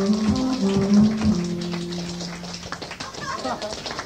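A live band's song ending: a short melody of a few stepped notes closes on a held note that fades out about two seconds in, leaving low crowd and room noise.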